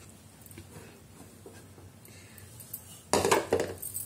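Quiet kitchen room tone, then about three seconds in a brief clatter of kitchen dishes being handled, under a second long.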